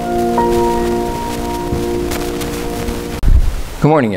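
Grand piano chord held and ringing out, with one higher note struck about half a second in, all fading away by about three seconds. A loud low thump follows, then a man's voice starts at the very end.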